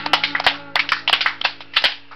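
A few people clapping irregularly while the last acoustic guitar chord rings out and fades.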